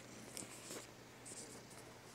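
Faint scratchy rustling with a few light ticks: a white cat's fur and whiskers brushing close against the phone's microphone.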